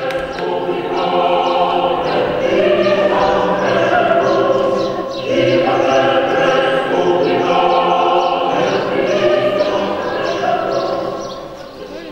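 A group of voices singing together in sustained phrases, with a brief break about five seconds in, dying away near the end.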